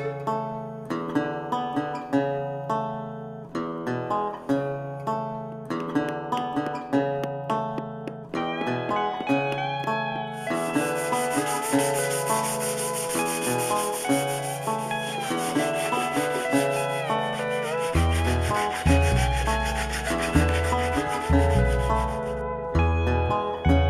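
Background music of plucked strings with a steady beat. About halfway through, a continuous rasp of a sanding block worked by hand over the wooden seat joins in underneath.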